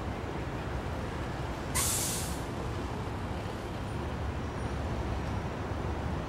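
City street traffic noise with a short, sharp hiss about two seconds in: a bus or truck letting off its air brakes.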